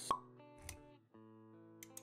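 Intro sound design: a sharp pop just after the start, then soft music with held notes, a second softer hit, and a brief dropout of the music about a second in.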